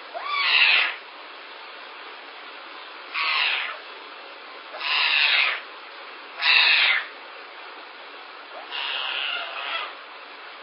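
A young animal calling: five hoarse calls, each under a second, one to two seconds apart, the last a little longer, over a steady background hiss.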